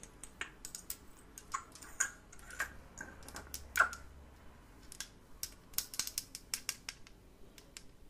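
Small glass dropper bottle handled with rubber-gloved fingers: a run of small, irregular clicks and taps as the dropper cap is worked loose, with one louder glass clink about halfway through.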